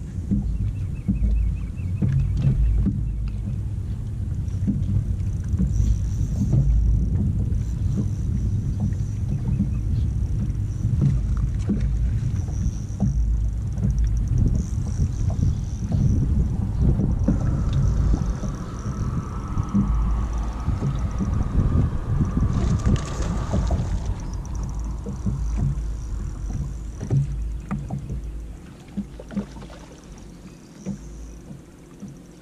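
Loud, rough low rumble of wind and water around a boat on choppy water, with small knocks of water against the hull; it eases off near the end.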